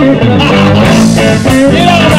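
A live band playing loudly in an instrumental passage, with fiddle and electric guitar over bass and drums.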